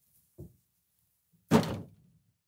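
A wooden door pulled shut, landing in its frame with one sharp thud about a second and a half in, after a softer knock near the start.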